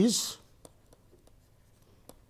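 One spoken word, then faint scratching and light clicks of a stylus writing on a pen tablet.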